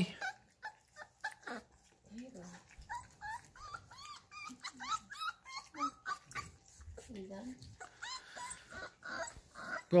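Young Bull Terrier puppies whimpering: a run of short, high squeaks and whines, some rising and some falling, amid light clicks and knocks of eating from steel bowls.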